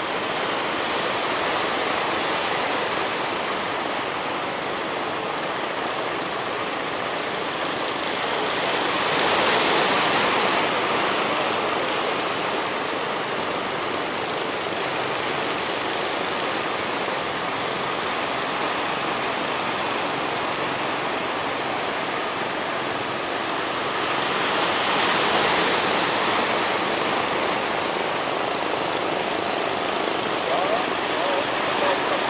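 Sea surf rushing steadily, swelling louder twice as waves break, about ten seconds in and again about twenty-five seconds in.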